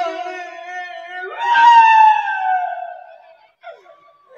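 A performer's drawn-out wailing cry, mock crying like a child: a held note, then a louder cry about a second in that slides down in pitch and fades out near the end.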